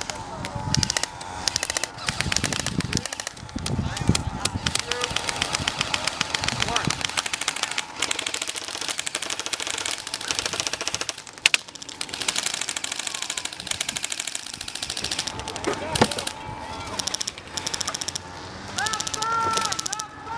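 Airsoft guns firing in rapid full-auto bursts, several at once, in nearly continuous rattling volleys, with a couple of sharper single cracks midway. The fire is aimed at the camera operator.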